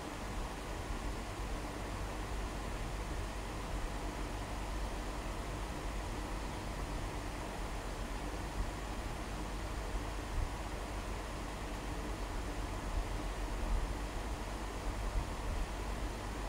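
Steady background hiss with a low hum: room tone, with no distinct sound event.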